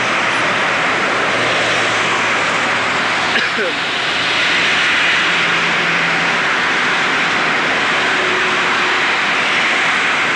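Steady noise of passing street traffic, with a short rising squeak about three and a half seconds in.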